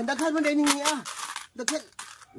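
Coins clinking against each other and a plate as hands sort through a pile of them, a run of quick clinks in the first second and a half.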